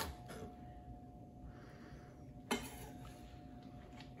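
Chef's knife mincing onion on a wooden cutting board: the last couple of chops come right at the start, then a single knock of the blade about two and a half seconds in.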